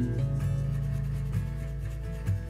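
Background music, with a water-soluble wax crayon rubbing across paper underneath it as a colour swatch is filled in.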